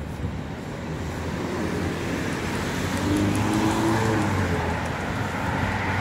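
Road traffic on a wet, slushy street: a passing vehicle's tyres and engine swell in loudness to a peak about three to four seconds in, then stay loud.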